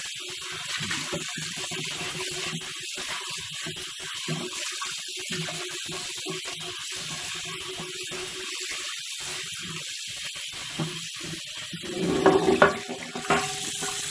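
Kitchen tap running, its water splashing into a cast iron skillet held in the sink while the pan is scrubbed with a silicone pad and plain water. About twelve seconds in the splashing gets louder and more uneven.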